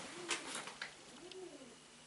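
A pigeon cooing faintly: two low coos about a second apart, each rising then falling in pitch. A couple of light taps sound in the first second.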